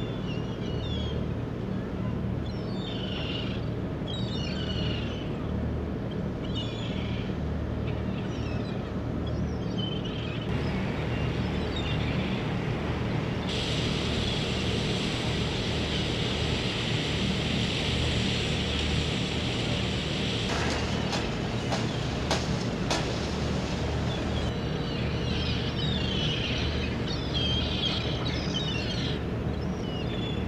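Gulls calling over the steady low hum of a boat's engine. About halfway through, a steady hiss takes over for several seconds, followed by a run of clicks and knocks.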